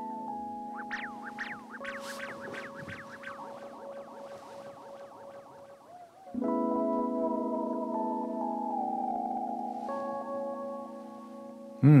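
Music: sustained keyboard chords fed through a delay effect, with a run of quick rising-and-falling pitch swoops about one to three seconds in. The chords thin out, then come back louder about six seconds in.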